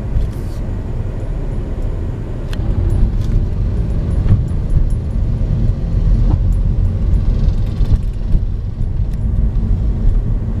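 A car driving slowly, heard from inside the cabin: a steady low rumble of road and engine noise, with a few faint clicks and knocks.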